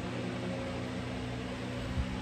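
Steady machine hum with a low, even hiss: background noise of a running appliance such as a fan.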